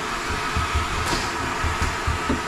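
Vacuum cleaner running steadily with a thin whine, its brush nozzle held to a hole in the ceiling liner sucking up crumbs of rotten deck core as they are picked out.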